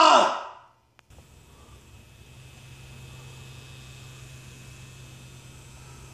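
A person's voice trailing off in a drawn-out sound that falls in pitch, then a click, and about five seconds of a faint, steady low hum.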